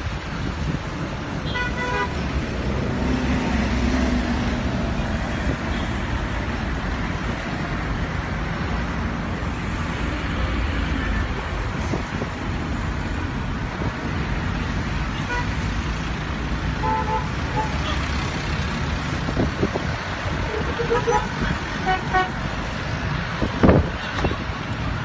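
Busy city street traffic: cars and microbuses running past with a steady low rumble, and short car horn toots about two seconds in and several more in the last third. A brief loud bump near the end.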